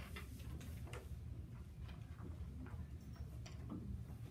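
Light, irregular taps and clicks of children's pencils and crayons on desks, about ten in four seconds, over a steady low room hum.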